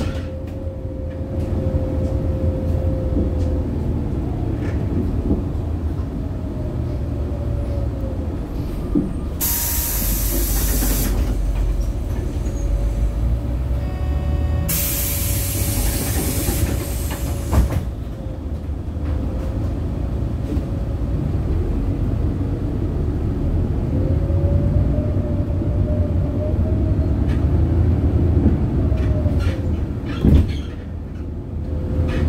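City bus interior running noise: a steady low rumble with a whine that rises and falls in pitch as the bus speeds up and slows. Twice, about ten and fifteen seconds in, a loud hiss of air from the bus's pneumatic air system lasts a second or two, and a single knock follows the second hiss.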